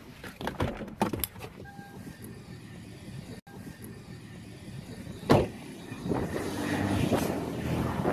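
A few sharp clicks, then a single hard knock about five seconds in, followed by a car passing by, its noise swelling toward the end.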